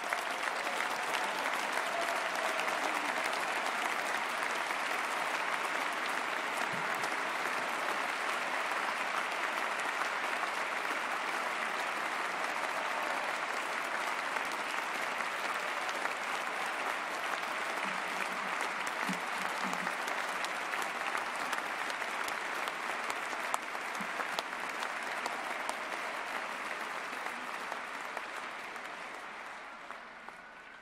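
A large audience applauding steadily, the clapping dying away over the last few seconds.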